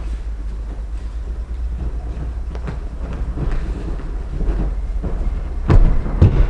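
A steady low rumble, then near the end a loud thud as a thrown aikido partner lands on the wrestling mat in a breakfall at the finish of a kokyunage throw.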